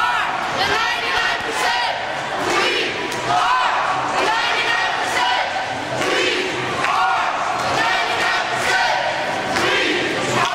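A crowd of protesters shouting and chanting, many raised voices overlapping without a break, in a large indoor mall atrium.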